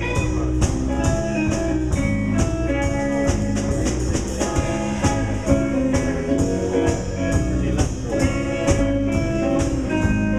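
Live blues band playing an instrumental break: electric guitar lead over drum kit and bass, with a steady beat.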